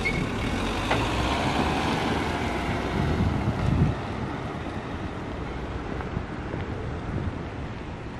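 A small hatchback car moving slowly nearby, its engine and tyres heard with wind on the microphone. About four seconds in the sound drops to a quieter, more distant car and wind.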